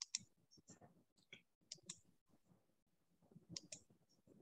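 Faint computer mouse clicks: several short clicks, some in quick pairs, spread across a few seconds over quiet room noise.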